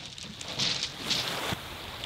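Small waves washing on a shingle beach, a steady hiss with a couple of brief surges and one short click.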